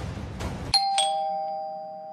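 Two-tone doorbell chime, ding-dong: a higher tone and then a lower one a quarter second later, both ringing on and fading slowly. Just before it, dramatic music with timpani cuts off abruptly.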